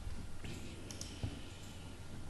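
A few faint clicks from a computer mouse, heard over low room noise.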